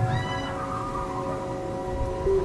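Spooky Halloween soundtrack: a cat's meow, rising slightly and held for about half a second at the start, over eerie sustained chord tones.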